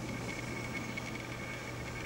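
Room tone: a steady low hum with a thin, high, steady whine and no distinct events.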